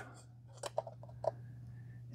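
Small metal wiring-compartment cover on the back of an LED panel's driver being pulled off by hand: a few faint, short clicks and scrapes.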